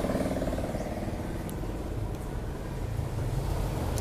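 An engine running steadily with an even low hum, with a couple of faint clicks.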